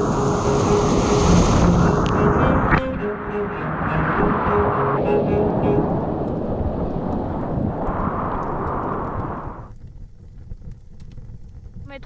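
Loud, rushing roar of whitewater churning around a kayak running big waves. It drops away abruptly about ten seconds in.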